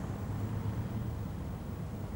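Steady low outdoor rumble with a faint hiss: open-air location background noise.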